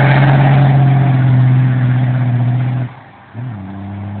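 Cummins diesel engine with 4,000-rpm governor springs held at high revs under load as the truck spins its tires, a loud steady note. About three seconds in the sound drops out sharply, and half a second later it comes back lower in pitch and quieter.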